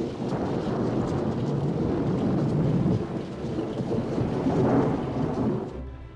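A steady, dense rumbling roar of noise from a film soundtrack, with no speech or music, fading out near the end.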